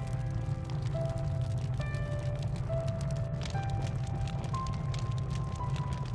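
Background film music: a slow melody of held notes over a steady low rumble, with faint crackling throughout.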